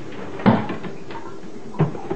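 Two hollow knocks about a second and a half apart, the first louder, as a crow flaps down off the rim of a bathtub.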